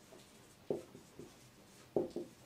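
Marker writing on a whiteboard: about three short, sharp strokes and taps as letters are written.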